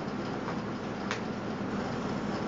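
Steady hiss from a gas stovetop heating a pressure cooker, with a faint low hum underneath and one soft tick about a second in.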